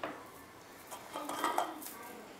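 A few faint clinks and clicks of small glass storage jars and their plastic lids as a jar is lifted out of its plastic stacking tray.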